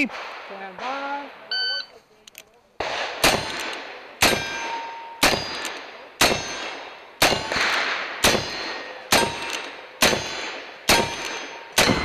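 Pair of 1873 single-action revolvers fired with black powder at steel targets: about ten sharp shots, roughly one a second, each followed by the clang and ring of a hit steel plate. A short electronic beep from a shot timer comes before the first shot.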